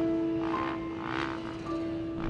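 Background music of sustained held notes, with a dirt bike's engine coming through in repeated short swells beneath it.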